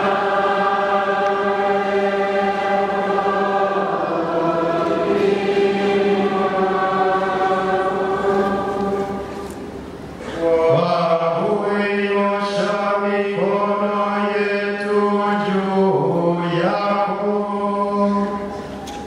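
A group of men's voices chanting a blessing together over a kneeling bishop, holding long sustained notes. About ten seconds in the chant briefly drops away, then resumes with shorter, moving notes.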